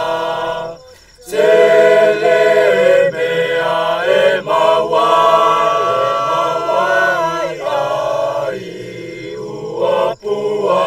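A choir singing a slow melody of long-held notes in several voices. It breaks off briefly about a second in, then comes back in full and softens near the end.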